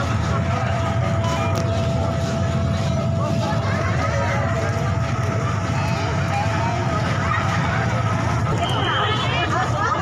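Motorcycle engines running as motorcycles move slowly through a street crowd, over the chatter of many voices. A thin steady tone holds through most of it and stops about eight seconds in.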